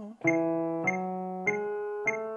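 Piano playing the opening of an E major scale with the left hand: E, F sharp and G sharp, one even note rising by step about every 0.6 s (100 beats a minute), each note ringing on into the next.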